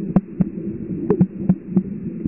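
Underwater ambience: a low steady hum with irregular sharp clicks, about six in two seconds.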